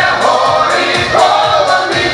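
A mixed choir of men's and women's voices singing a Ukrainian folk song in unison and harmony, over accompaniment with a steady beat.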